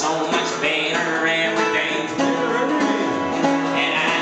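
A live band song: a strummed acoustic guitar carrying the tune, with a drum kit playing along.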